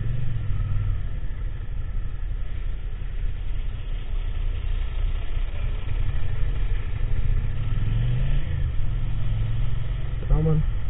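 Motorcycle engine heard from an onboard camera, running at low speed with wind and road noise; its pitch rises as the bike speeds up about eight seconds in.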